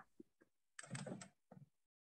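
Near silence, with one brief faint noise about a second in.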